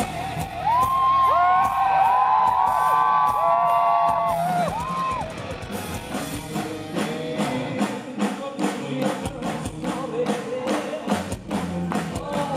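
Live rock band playing: electric guitar, drums and congas, with high held, bending vocal wails from the singer in the first five seconds, then a steady driving beat.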